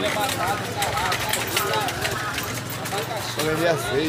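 People talking at an open-air street market, with the steady low hum of an idling vehicle engine underneath.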